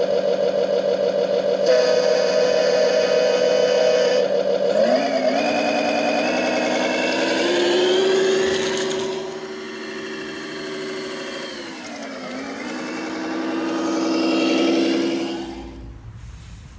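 Simulated diesel semi-truck engine sound from an ESP32 sound controller, played through the RC truck's onboard speaker. It idles steadily, rises in pitch about five seconds in as the truck drives off, and holds there. It drops back around twelve seconds, rises again, and cuts off just before the end.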